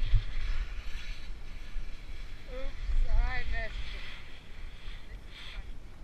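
Skis carving and scraping over hard, windblown snow, with wind buffeting the camera microphone as a gusty low rumble. About halfway through comes a short run of high, bending squeaks or calls.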